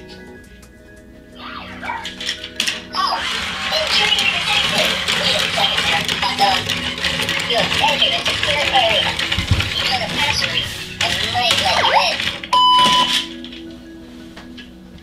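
Meccano M.A.X. toy robot on patrol with its radar on, playing warbling electronic sound effects and music, with a short steady beep a little before the end.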